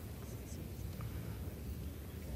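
Quiet background of a large legislative chamber between called votes: a low steady hum with a few faint small clicks.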